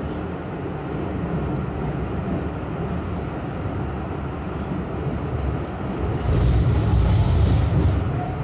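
New York City subway train running through a tunnel, heard from on board: a steady rumble and hiss of wheels on rails, growing louder about six seconds in.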